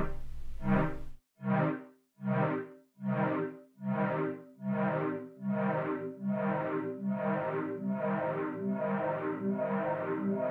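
A Bitwig Polysynth chord fed back through the Delay+ device at high feedback, with the left and right echoes detuned in time. After the first loud chord, the repeats come as separate hits about every 0.8 s. They then lengthen and smear into a continuous pulsing wall of sound as the two sides drift apart.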